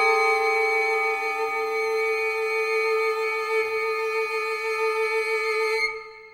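Film score: a single long-held violin note with a slight vibrato, which stops abruptly near the end.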